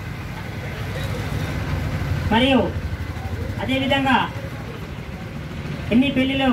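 A low, steady rumble of street traffic, with a man's voice briefly heard twice near the middle.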